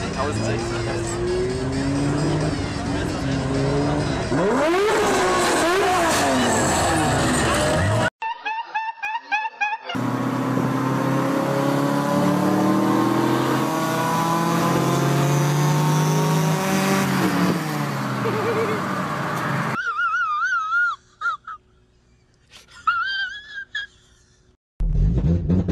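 Car engines revving and accelerating hard. First a drag-strip launch with the engine pitch gliding up and down. After a short break, a car accelerates from inside the cabin, its engine pitch climbing steadily and then dropping once at a gear change. A brief voice comes near the end.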